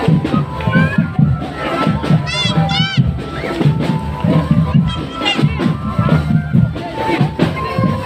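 Indonesian drumband, a marching percussion band, playing a fast, steady beat on its drums, with crowd voices and high calls over it.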